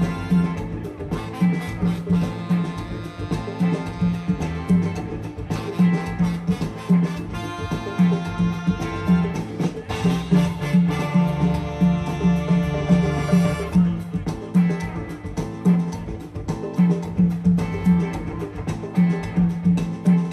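Live afrobeat band playing a groove: congas, drum kit, electric bass, keys and guitar, with a pulsing bass line. About halfway through, the horn section of saxophones, trombone and trumpet plays a held passage over the rhythm.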